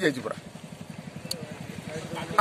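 An engine idling with a rapid, even low pulse, heard through a pause in a man's speech; his last word trails off at the start.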